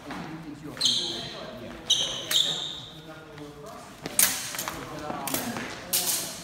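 Steel training swords clashing in sparring: three sharp metal-on-metal strikes in the first two and a half seconds, each leaving a high ringing tone, then several shorter knocks later on. Voices murmur in the background.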